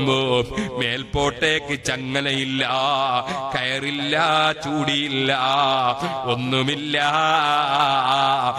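A man chanting an Islamic devotional recitation in a drawn-out melody. The opening phrases are short and broken; from about two and a half seconds in come long held notes with a wavering pitch, with one brief break near the middle.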